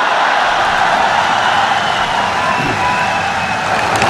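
Large crowd cheering and shouting in a steady roar, with a few thin, held whistles over it.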